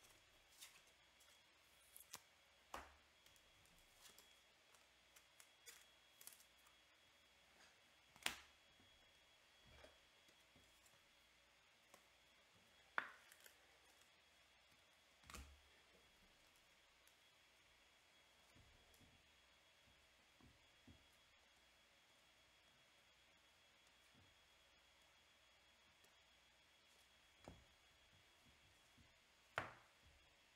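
Mostly near silence with scattered faint clicks and taps, sharper ones about eight and thirteen seconds in: packs of baseball cards being opened and the cards handled.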